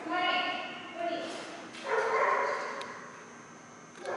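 A dog giving three drawn-out, high-pitched calls, the last about a second long.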